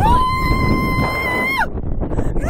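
A woman rider on a slingshot ride screaming: one long, high scream held on a single pitch for about a second and a half, then dropping off. Wind rushes over the microphone throughout.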